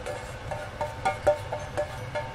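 Soft background music: a few short notes picked out one after another, with faint clicks of a spatula stirring pine nuts in a frying pan underneath.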